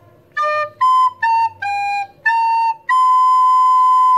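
Soprano recorder playing a slow phrase of six separate notes, re, si, la, sol, la, si (D, B, A, G, A, B), the last note held long.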